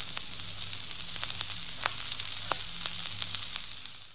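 Steady crackling hiss with scattered sharp clicks over a faint low hum, fading near the end.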